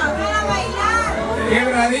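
Several women's voices talking loudly at once.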